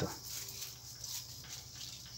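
A dog whimpering faintly: one short, thin whine a little under a second in.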